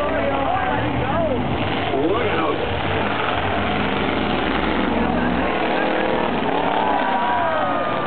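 Race car engines running around an oval track, a steady low drone that drops away about five and a half seconds in, with spectators' voices and shouts over it.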